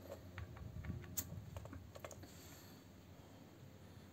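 Faint small clicks and taps of a dial tyre gauge's hose chuck being handled and fitted onto a bicycle tyre valve, with one sharper click about a second in.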